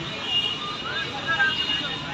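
Busy street noise: road traffic running by, with the faint chatter of a crowd of onlookers.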